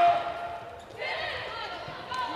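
Volleyball rally on an indoor hardwood court: players' sneakers squeaking as they move, over the murmur of crowd voices.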